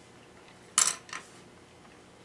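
Chopsticks against a plate: a short clatter just under a second in, with a smaller one right after.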